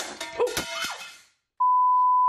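About a second of mixed music-like sound with sliding pitches and clicks. After a brief gap it gives way, near the end, to a loud, steady electronic bleep held at one pitch.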